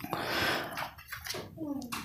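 Quiet film dialogue: a soft, breathy line, then a few low spoken words near the end.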